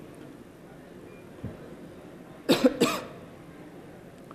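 A man coughing twice in quick succession into a lectern microphone, about two and a half seconds in.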